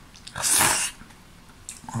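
A man slurping a mouthful of ramen noodles in one loud, hissy slurp lasting about half a second.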